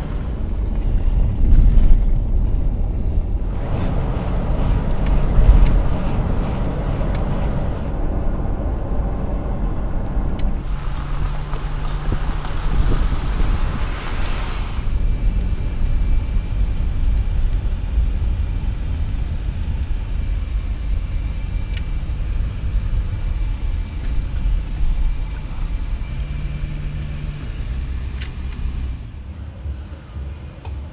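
A car being driven, heard from inside the cabin: a steady low rumble of engine and road noise.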